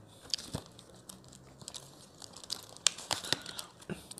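Cardboard takeaway food box being handled, its lid flaps lifted and folded: scattered rustles and small clicks, the sharpest about three seconds in.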